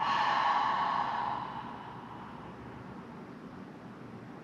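A woman's long, audible exhale through the mouth, a sigh on the cued out-breath, fading over about a second and a half. Then only faint room tone.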